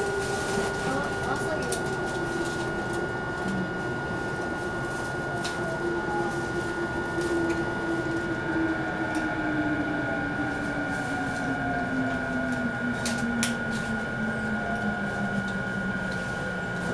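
Traction motors of a JR E233-7000 series electric motor car whining under braking, the whine falling steadily in pitch as the train slows to a stop, over steady running noise and a constant high tone.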